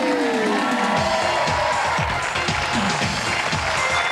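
Studio audience applauding and cheering over the show's music.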